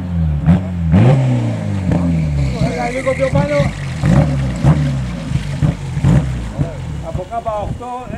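Race-prepared classic VW Beetle hillclimb car braking into a hairpin: engine pitch falls again and again, broken by short sharp throttle blips on the downshifts, then fades a little near the end.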